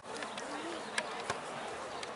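Outdoor ambience beside a rugby pitch: a steady hiss with faint distant voices, and two short sharp knocks about a second in.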